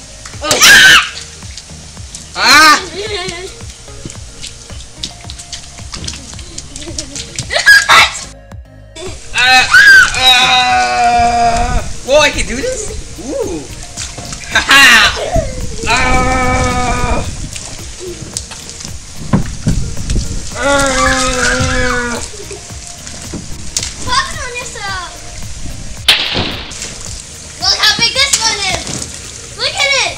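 Water splashing from water balloons in a children's water fight, with short shouts from the children over background music.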